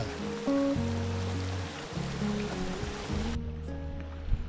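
Background music with held notes over the steady rush of water flowing in a stone irrigation channel; the water sound drops away suddenly about three and a half seconds in.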